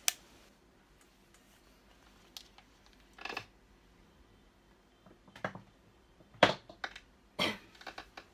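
Handling noise of a small travel iron and a folded cloth on a desk: a sharp click at the very start, then a few separate soft knocks and rustles with quiet in between.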